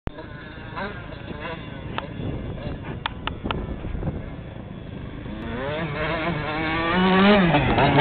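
Dirt bike engine approaching at speed, faint at first and then growing steadily louder over the second half, its pitch rising and wavering as the rider works the throttle and shifts.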